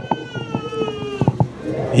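A woman's long, high wailing cry: one drawn-out note that sinks slightly in pitch and breaks off after about a second and a half, followed by a couple of sharp clicks. It comes from a woman being prayed over for spirit possession.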